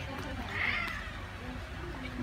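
Baby macaque giving a short, high-pitched squeal about half a second in, while it drinks from a bottle.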